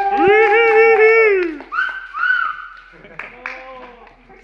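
Onlookers' wordless vocal cheering: one long, drawn-out 'ooh' cry that falls in pitch at its end, followed by two shorter high-pitched whoops and then quieter voices.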